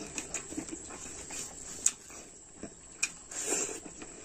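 A person eating rice with his fingers: chewing and smacking the lips, with a few short wet clicks from the mouth, the loudest a little under two seconds in.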